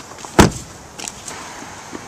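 A car door shutting once with a heavy thud about half a second in.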